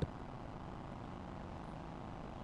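Faint, steady background noise with no distinct sounds: the open ambience of the ground between commentary lines.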